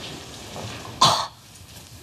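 A single short, sharp cough-like burst of breath from a person about a second in, over faint room hiss.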